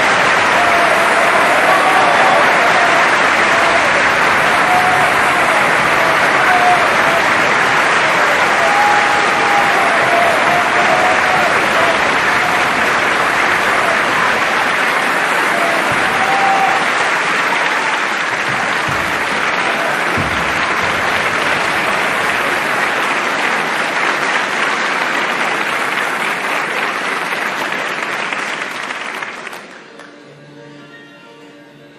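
Opera audience applauding a live performance, with a few voices calling out over it in the first half. The applause thins gradually and cuts off suddenly just before the end.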